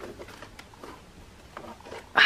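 Faint handling noise: light rustles and a few small clicks scattered through, as a hand reaches along a shelf of records and CDs.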